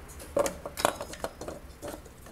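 Light metallic clinks and knocks from a hand-held aluminium engine oil cooler being handled and turned, a handful of short sharp strokes, the loudest two in the first second.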